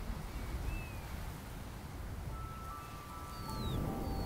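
Quiet outdoor ambience with a low steady rumble and a few faint, thin calls that slide downward in pitch, from birds. Soft background music with held notes comes in about halfway.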